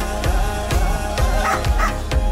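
Background pop music with a steady beat and heavy bass.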